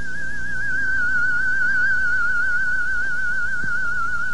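A single high, sustained, theremin-like tone with a quick, even vibrato, drifting slightly lower in pitch: an eerie musical sting.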